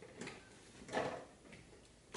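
A few soft, short taps of a marker on paper, the loudest about a second in, as marks are dabbed onto a drawing.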